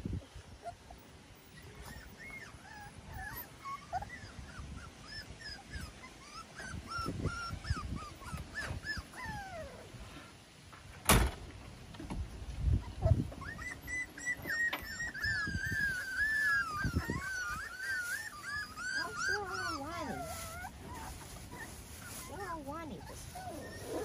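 Miniature schnauzer puppies whimpering in short, high, wavering calls that run together into one long whine about two-thirds of the way through. A single sharp knock about halfway in is the loudest sound, with a few low thumps around it.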